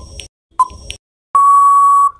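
Quiz countdown-timer sound effect: short ticking beeps, then a long steady beep about one and a half seconds in, marking time out.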